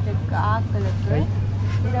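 Brief snatches of voices, about half a second in and again around a second in, over a steady low hum.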